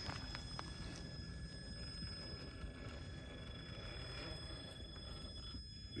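Stock brushed motor and drivetrain of a Traxxas TRX4 High Trail RC crawler running faintly at crawling speed as the truck climbs a rock ledge: a low steady rumble under a thin, steady high-pitched whine, with a couple of light clicks in the first second.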